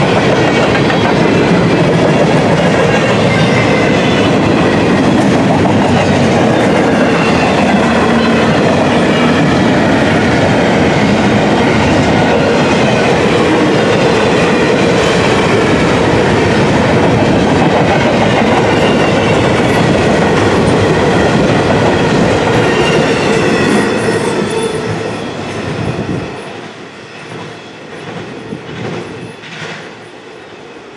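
Loaded double-stack intermodal container cars of a freight train rolling past close by, loud and steady, with a faint high squeal from the wheels. The end of the train passes about 25 seconds in, and the sound then falls away as the train recedes.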